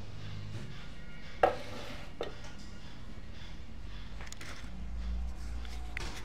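A sharp, hard knock about a second and a half in, then a fainter one under a second later and a few light clicks, over a steady low hum.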